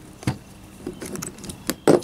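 Scattered light metallic clicks and taps as a steel drill bit is handled, with a louder knock near the end.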